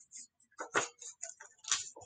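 Scissors snipping through a sheet of paper: a run of short, irregular snips, a few a second, as the blades open and close along a curved cutting line.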